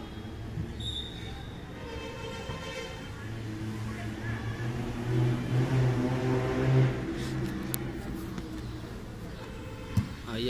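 A motor vehicle's engine with a steady low hum that swells to its loudest about five to seven seconds in, then fades away, as if passing by.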